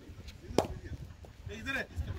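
A single sharp crack of a cricket bat striking the ball, about half a second in, followed by shouting from players.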